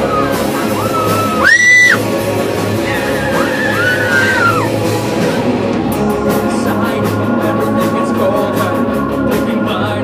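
Amateur hard rock band playing live in a large room: electric guitars, bass and drum kit, with a harmonica wailing high bending notes over the top. The loudest moment is a high note held for about half a second, a second and a half in.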